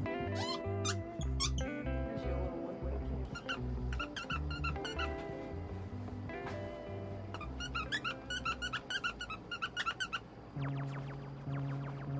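Background music over the squeaking of a dog's squeaky toy being chewed and pressed, in two runs of rapid squeaks, about a third of the way in and again past the middle.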